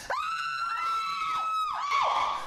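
A woman's long high-pitched scream, held at one pitch for about a second and a half, then breaking off.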